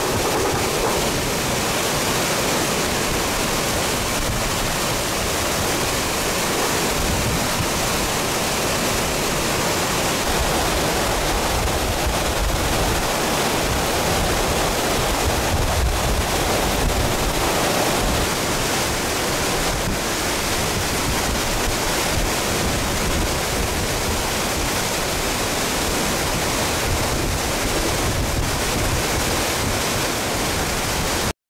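Tropical cyclone wind and heavy rain making a loud, steady rush of noise, with gusts buffeting the microphone in uneven low rumbles.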